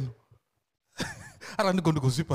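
A man's voice into a close microphone breaks off just after the start, leaving about half a second of dead silence, then comes back about a second in with a breathy sound followed by pitched, drawn-out syllables.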